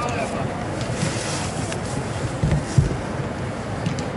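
Steady noisy background of an indoor football hall with faint players' voices, and a dull low thump a little under three seconds in.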